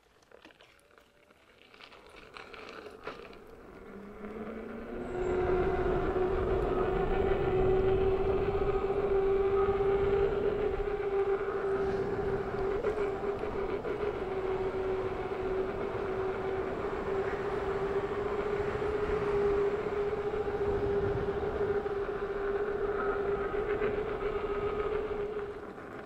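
Veteran Sherman electric unicycle riding on a tarmac lane: a steady motor whine over wind and road noise. It builds over the first five seconds, with a brief rising pitch as the wheel picks up speed, then holds at cruising speed.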